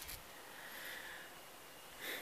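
Quiet outdoor background: a faint, steady hiss with no distinct sound standing out.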